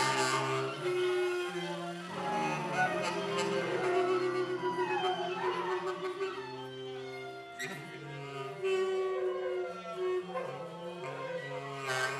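Live improvised music: several long held low notes that shift pitch every second or two, with higher sliding notes weaving above them and a few sharp clicks.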